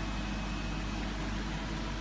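Steady low hum with a soft hiss: background equipment noise, with no distinct events.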